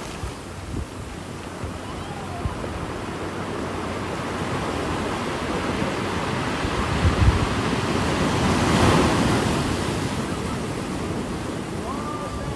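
Ocean surf washing onto a beach, swelling to its loudest about two-thirds of the way through, with wind rumbling on the microphone.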